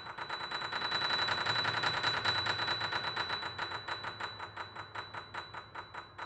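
Grand piano played in rapid repeated staccato notes that grow denser and louder to a peak about two seconds in, then thin out and slow toward the end, with one high tone ringing steadily above them.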